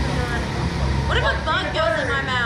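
People talking from about a second in, over a steady low rumble.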